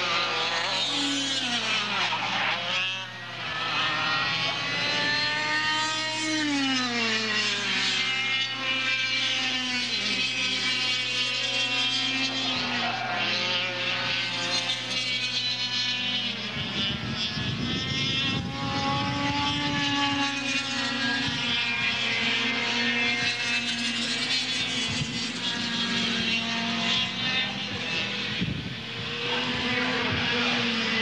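Several air-cooled two-stroke racing kart engines running on the track, their pitch rising and falling as they accelerate and lift off through the corners, with more than one engine heard at a time. A low rumble comes in for a few seconds just past the middle.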